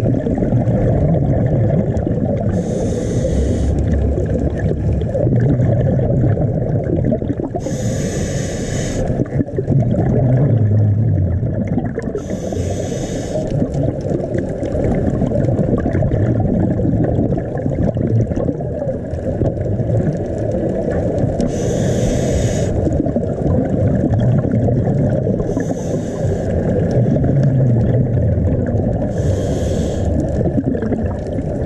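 A scuba diver breathing through a regulator underwater: a short hiss of inhalation every four to nine seconds, six in all, most followed by a low bubbling rumble of exhaled air, over a steady underwater rush.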